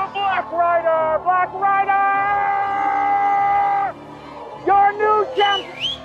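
Horn fanfare: a few short notes, one long held note of about two seconds, then a quick run of short notes ending in a rising squeal.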